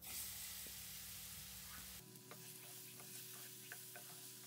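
Faint sizzling of chopped banana pieces frying in hot ghee in a nonstick pan, with a few light clicks in the second half.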